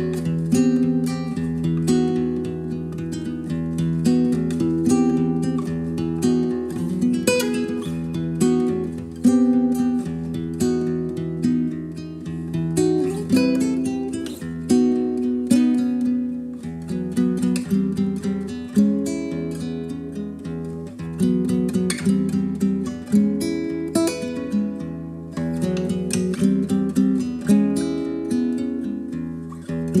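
Background music: acoustic guitar picked and strummed steadily.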